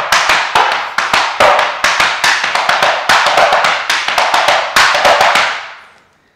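Metal taps on tap shoes brushing, scuffing and striking a wooden tap board in a fast, continuous run of brushes, backbrushes and hops. It fades out just before the end.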